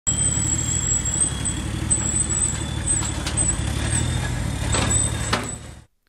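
A diesel engine running steadily at low revs, with a thin high whine above it and a couple of light clicks near the end. The sound cuts off suddenly.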